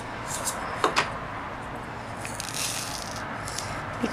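Small plastic diamond-painting drills rattling and clicking in a plastic tray, with a few sharp clicks and a brief hissy patch of grains sliding.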